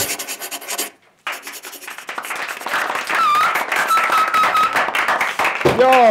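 Pencil scratching on paper in quick repeated strokes, the sound of a cartoon drawing being sketched. It breaks off briefly after about a second, then runs on as a continuous scratchy rasp, with a thin high whistling tone in the middle.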